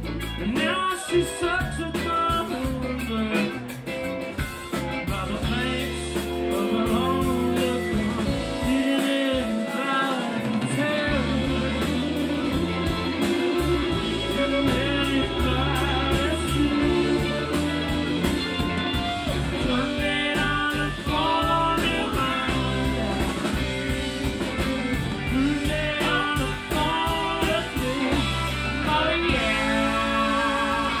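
Live blues-rock band playing: electric guitars with a wavering lead line over drums and keyboards, loud and continuous.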